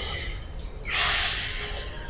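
A man's audible breath: one short, noisy rush of air about a second in.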